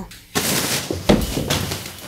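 A man stumbling over a bulging black bag of clothes on the floor: a sudden thump with rustling a third of a second in, and a second sharp thump about a second in.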